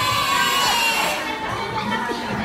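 A young woman's high-pitched shriek of laughter, held for about a second and falling slightly in pitch before it cuts off, followed by lower voices.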